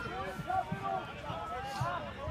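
Overlapping chatter of several voices, with no single clear speaker.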